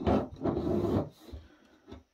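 Bare circuit board of a Netgear EN104TP Ethernet hub scraping and rubbing on a tabletop as it is handled, a rough rasping noise for about a second that fades out.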